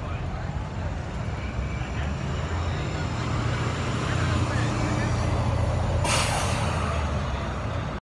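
Orion VII Next Generation city bus pulling away, its engine rumble building as it passes. About six seconds in there is a sudden sharp hiss of compressed air that dies away within about a second.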